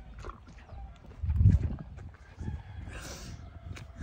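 A horse eating apple pieces from a steel bowl held to its muzzle, with scattered clicks and one loud, low, muffled thump about a second and a half in.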